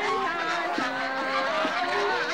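A large flock of domestic geese honking, many calls overlapping continuously.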